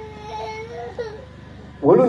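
A high-pitched crying voice, held steadily for about a second and then breaking off. A man starts speaking again over a loudspeaker near the end.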